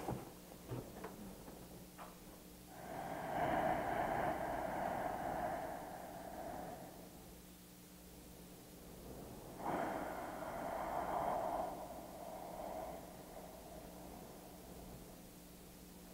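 A man taking two long, slow, deep breaths, each lasting about four seconds, close on a clip-on microphone. It is deliberate slow breathing to calm himself and slow his heart rate.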